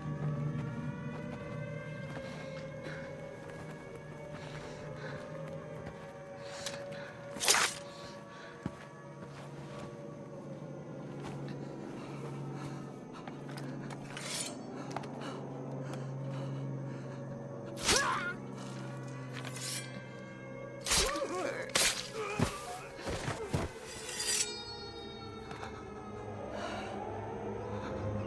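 Tense film score of sustained and slowly gliding tones over a low steady drone, cut by sharp hits: one about a quarter of the way in, one about two-thirds in, then a quick cluster of them near the end.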